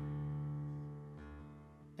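Acoustic guitar chord ringing out and slowly fading, with a change in the low notes about a second in.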